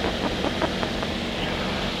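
Steady drone of a Tecnam P92 Echo Super light-sport aircraft's engine and propeller in cruise flight, heard from inside the cockpit.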